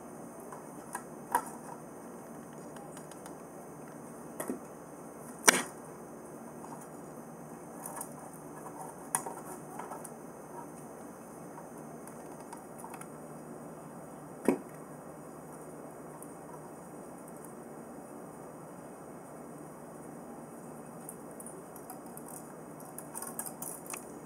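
A hot glue gun being worked along the edge of a clear plastic frame: about half a dozen sharp plastic clicks and taps, several seconds apart, the loudest about five seconds in, over a steady faint hiss.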